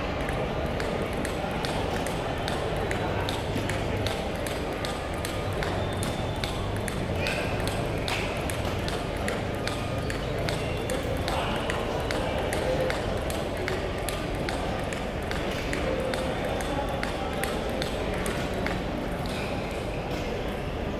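Table tennis balls ticking off bats and tables from many matches at once across a large hall, sharp irregular clicks several times a second. A steady murmur of voices runs underneath.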